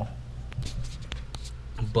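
Handling noise in a small room: a few light, scattered clicks and rustles over a steady low hum.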